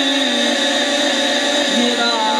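A man singing a devotional naat into a microphone, holding one long note that steps slightly lower twice.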